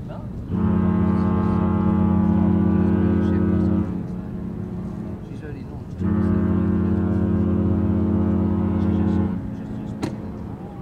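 Cruise ship Spirit of Discovery's deep horn sounding two long, steady blasts, each about three seconds, with a pause of about two seconds between them, as she departs.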